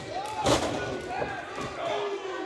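A single forearm strike landing on a wrestler's body with a sharp smack about half a second in, amid voices calling out.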